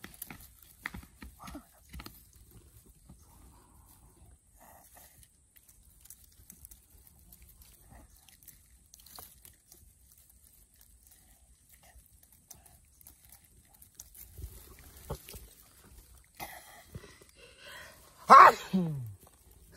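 Faint, scattered crackles and rustles of dry straw being handled beside a mud eel burrow, with a few louder clicks in the last few seconds.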